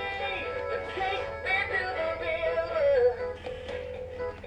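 Big Mouth Billy Bass animatronic singing fish toy playing its song: a sung vocal melody over instrumental backing.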